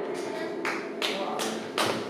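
A lull in a live acoustic song: four evenly spaced taps, about two and a half a second, keeping time, with faint voice and room sound underneath.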